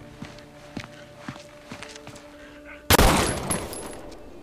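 A single pistol shot about three seconds in, sudden and loud, with a long echoing tail, over a low steady music drone.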